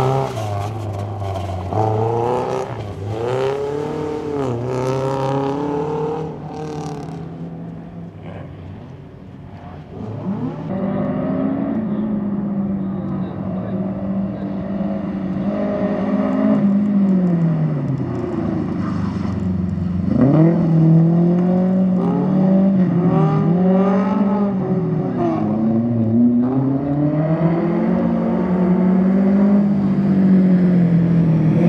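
BMW 2002 rally car's four-cylinder engine revving hard, its pitch climbing and dropping again and again with gear changes and lifts for the corners. It fades somewhat about eight to ten seconds in, then comes back louder.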